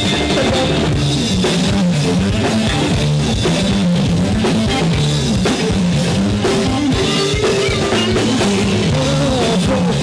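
Live rock band playing an instrumental passage on drum kit, electric guitar and bass guitar, loud and steady, with no singing.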